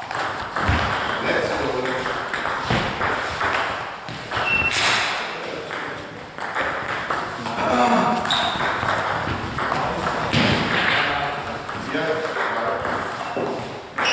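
Table tennis ball clicking back and forth off the bats and the table in a fast rally, many sharp ticks in an uneven rhythm, with voices in the hall in between.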